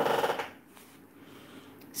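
A chair creaking briefly in the first half-second, then quiet with a couple of faint clicks.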